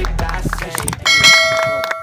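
Background music fades out, then about a second in a bright bell chime rings with several steady tones and dies away: the notification ding of a subscribe-button animation. People are talking underneath.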